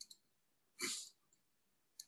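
Near silence over a meeting microphone, with a short breathy puff, like a breath or sniff, about a second in, and faint clicks at the start and end.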